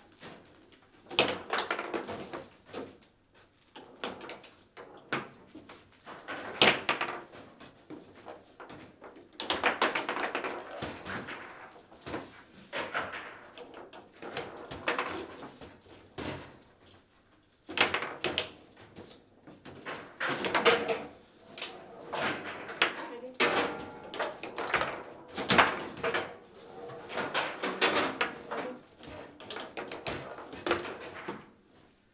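Table football play: sharp clacks and thuds of the ball struck by the plastic men and of the rods knocking against the table, coming in irregular flurries with rattling in between. There is a short near-silent pause about sixteen seconds in.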